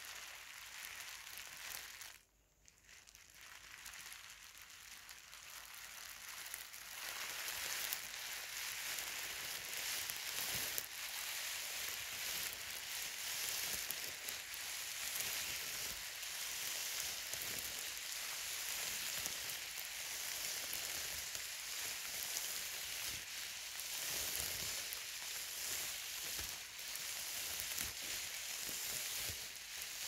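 Thin plastic bag crinkled and rustled close to the microphone: a dense, continuous crackle that breaks off briefly about two seconds in, then builds and goes on steadily.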